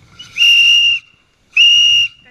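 Two short, steady, high-pitched blasts on an animal trainer's handheld whistle, a little over a second apart. It is the marker signal of positive reinforcement training, telling the sea lion it has just done the behavior asked of it.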